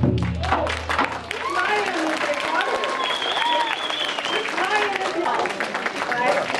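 Lion-dance drumming stops within the first second, and the audience applauds, with voices calling out over the clapping.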